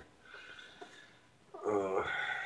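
A near-quiet stretch with one faint tick about halfway, then a man's wordless voiced sound starting about three-quarters of the way in.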